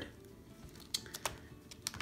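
A few faint clicks and crinkles from a thin plastic acetate sheet being pressed and lifted by hand, with a small cluster about a second in and one more near the end.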